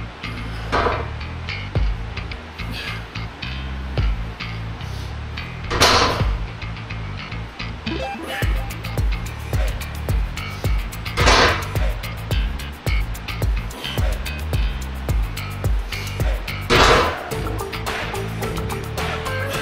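Background music with a steady beat. Over it, a short, loud burst of noise comes four times, about every five and a half seconds, at the pace of barbell deadlift reps.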